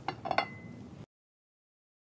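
Three light clinks of a metal pie pan being handled on a ceramic plate, the last one ringing briefly. The sound cuts to dead silence about a second in.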